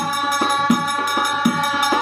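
Men singing a devotional Ganesh bhajan on a held note over a steel-shelled double-headed drum beaten in a steady rhythm, about three strokes a second.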